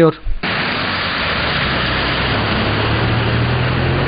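Steady hiss of heavy rain and water on a flooded street, starting suddenly a moment in, with a low vehicle engine hum growing in the second half.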